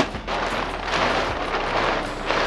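Heavy plastic tarp rustling and crackling as it is unfolded and shaken out, with a sharp snap at the start.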